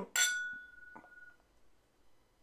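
A whiskey tasting glass clinked once in a toast: one sharp strike with a bright glass ring that dies away over about a second, then a faint tick.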